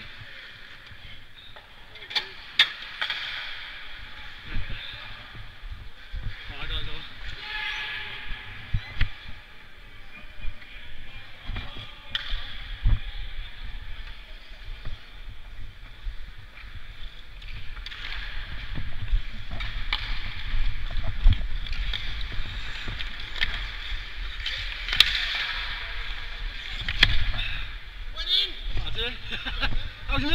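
Ice skate blades scraping and carving the ice, heard from a helmet camera, over a low rumble of movement and wind on the microphone. Occasional sharp knocks ring out, and the skating grows louder in the second half.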